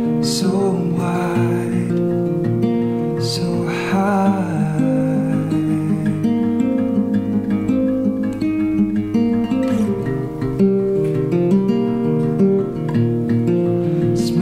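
Guild acoustic guitar with a capo, played fingerstyle: a steady pattern of picked notes and chords.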